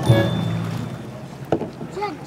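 Background music dies away in the first half second, leaving the splash and trickle of water from a kayak paddle stroke. A single knock comes about one and a half seconds in.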